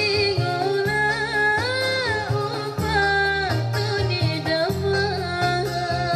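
A woman singing a qasidah song from North Maluku over backing music. She holds long notes that bend and slide in pitch, over a steady, rhythmic accompaniment.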